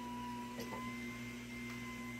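Horizontal slow masticating juicer's electric motor running, a steady hum with a thin high whine above it.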